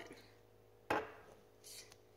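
A single sharp knock about a second in as a table knife and a glass jar of jelly are handled, followed by a faint short scrape of the knife.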